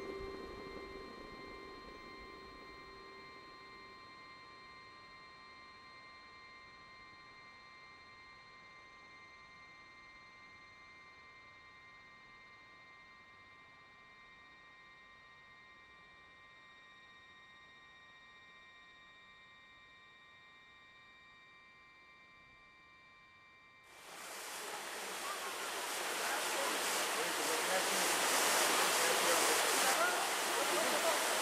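Soft held notes of background music fade to a faint level and linger. About three-quarters of the way through, the rushing of a small waterfall cascading over rocks cuts in suddenly and grows louder.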